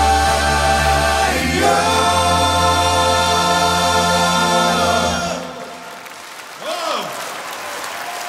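All-male vocal ensemble with band singing a long held closing chord over a low bass note, which cuts off about five seconds in. Softer applause follows.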